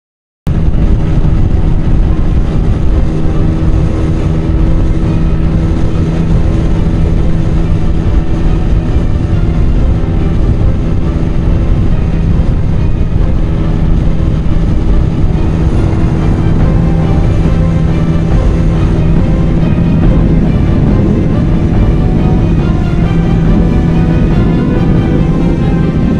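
Honda CBR125R's single-cylinder four-stroke engine, with an Ixil Hyperlow exhaust, held at high revs at motorway speed, a steady engine note under heavy wind rush. The sound starts abruptly about half a second in.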